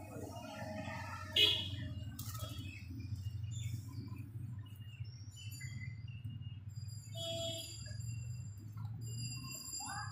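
Plastic wire strips rustling and clicking as they are pulled out and handled, with one sharp plastic click about one and a half seconds in, over a steady low hum. Birds chirp in the background, mostly in the second half.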